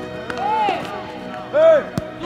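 Two short raised shouts from people at a football pitch, the second and louder one near the end. Right at the end comes a single sharp thud of a football being struck in a shot.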